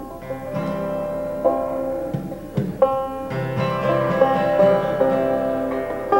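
Banjo and acoustic guitar playing the instrumental opening of a folk song: a steady run of plucked, ringing notes.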